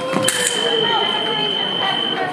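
Electric fencing scoring machine sounding its steady single tone for nearly two seconds as a saber touch registers, right after a sharp clack about a quarter second in. Voices of people in the hall underneath.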